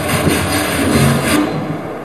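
Improvised live percussion: a sustained scraping, hissing wash that stops about a second and a half in, over low held tones.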